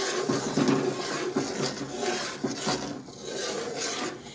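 A metal spoon stirring milk in a large metal pot, scraping and knocking against the pot's bottom and sides in irregular strokes.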